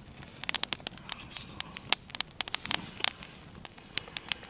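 Wood campfire crackling, with irregular sharp pops, some in quick runs of several.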